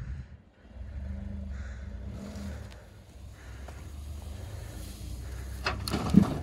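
Ford F-150 EcoBoost pickup's engine working under load, a steady low rumble that starts about a second in as the truck takes up the slack of a kinetic recovery rope towing a heavy stuck box van.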